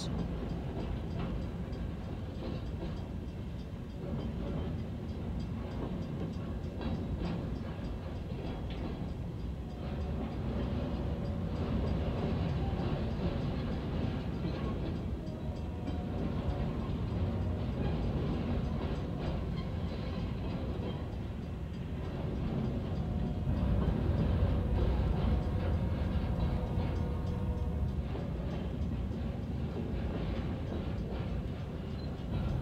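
Freight train of empty trash-container cars rolling past a grade crossing, heard from inside a car: a steady rumble of wheels on rail with rhythmic clicking, and faint steady tones coming and going through the middle.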